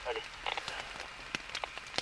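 A few faint, irregular ticks and taps over low background hiss, after a brief spoken word at the start.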